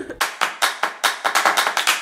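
A quick run of sharp hand claps, about seven or eight a second, starting just after the beginning.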